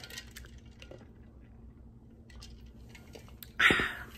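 Faint scattered clinks and rustles of a Stanley tumbler being handled, then one short, louder burst of noise near the end.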